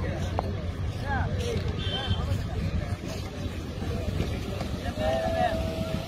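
Indistinct voices of several men talking and calling out, over a steady low rumble; one voice holds a single drawn-out call about five seconds in.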